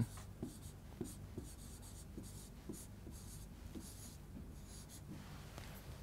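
Chalk writing on a chalkboard: faint, irregular taps and scratches of the strokes, a couple each second.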